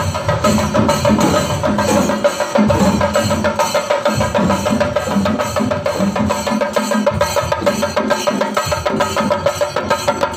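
Chenda drums of a Kerala chenda melam ensemble, beaten with sticks in a fast, dense, unbroken rhythm of strokes.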